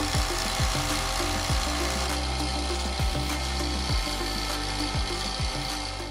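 Steady rasping, hissing machine noise of a running home-built fusor rig, its vacuum pump and high-voltage supply on while the grid glows, under background music with a bass line and deep kick-drum beats about once a second.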